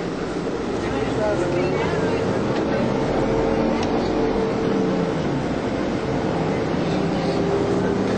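Men shouting and arguing heatedly in Arabic inside a bus, over the steady noise of the moving bus.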